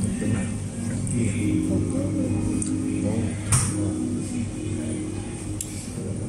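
Background music with long held notes under indistinct voices, with a single sharp click a little past halfway.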